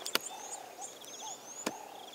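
Birds chirping in the background, with two sharp clicks about a second and a half apart.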